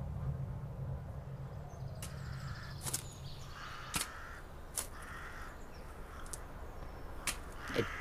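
Crows cawing several times, with a few sharp knocks among the calls. A low hum runs under the first half and stops about four seconds in.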